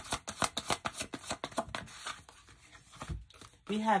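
A deck of tarot cards shuffled by hand: a quick, even run of card slaps, about six or seven a second, that stops about two seconds in.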